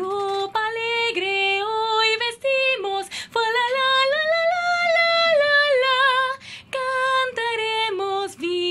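A woman singing unaccompanied, holding long notes and sliding between them; the longest note, held for a couple of seconds in the middle, rises and then falls with a wavering vibrato at its end.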